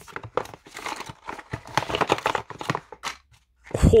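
Phone retail box and its packaging being rummaged through by hand, with accessories lifted out: a run of quick crackles, rustles and small clicks that stops about three seconds in.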